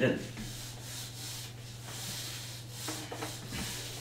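Whiteboard duster wiping marker ink off a whiteboard, a steady scrubbing rub in repeated strokes, over a low steady hum.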